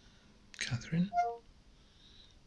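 A brief whispered voice, then a quick descending run of electronic beep tones from the phone's Cortana assistant app as it takes the spoken query.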